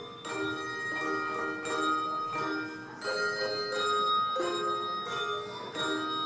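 Handbell choir playing: several bells struck together in chords, each ringing on and fading, with new strikes about twice a second.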